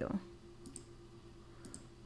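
A few faint computer mouse clicks, a pair about half a second in and another near the end, over low room tone with a faint steady hum.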